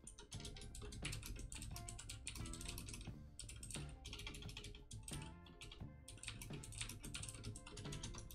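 Typing on a computer keyboard: quick runs of key clicks broken by brief pauses. Quiet background music plays underneath.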